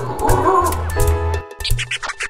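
Short music sting over an animated show logo: held bass notes and chords, with a brief animal-like call in the first half. It breaks off about one and a half seconds in, and a quick run of clicks starts as the next jingle begins.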